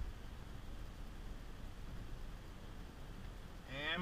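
Faint, steady low rumble of road and drivetrain noise inside the cabin of a moving 2022 Volvo XC60 Polestar Engineered plug-in hybrid as it runs toward a stop. A man's voice comes in just before the end.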